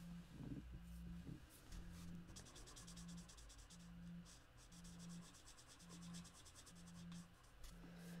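Faint scratching of a Stampin' Blends alcohol marker tip on cardstock: quick colouring strokes in the middle, the light green being laid over the darker shading. A faint low hum pulses on and off about once a second underneath.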